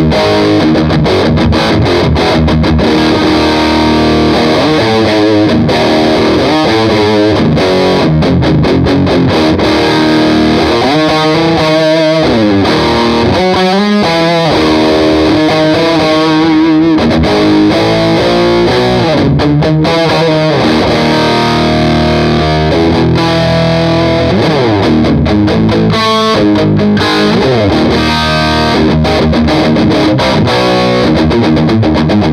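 Distorted electric guitar played through a Marshall JCM 800 combo amp and its Marshall G12 Vintage speaker, miked in front of the cabinet. It plays continuous chords and melodic lines with no pauses.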